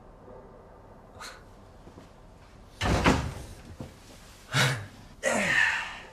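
A loud thud about three seconds in, with two shorter, sharp sounds following near the end.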